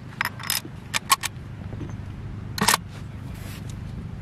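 Bolt of a K98k Mauser rifle being worked and drawn out of the action: a few sharp metallic clicks in the first second, then one louder clack near three-quarters of the way through.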